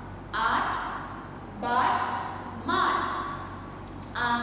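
Speech only: a woman's voice saying words aloud in short separate utterances, about one a second.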